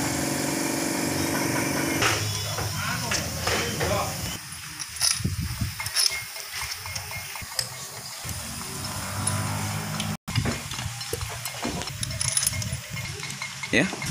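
Scattered metallic clicks and knocks as main bearing caps and their bolts are fitted over an engine's crankshaft and run in with a T-handle socket wrench. A steady drone fills the first two seconds and then stops.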